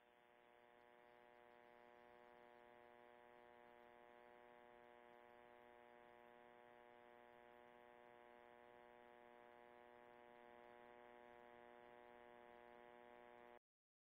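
Near silence with a faint, steady electrical buzz: a hum with many evenly spaced overtones that fades in over the first second or two and cuts off suddenly near the end.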